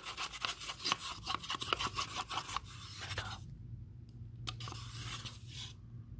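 Metal spoon stirring quickly in a small plastic cup, mixing a liquid with fast scraping strokes, about five a second. The strokes stop about two and a half seconds in, leaving only a few faint clicks.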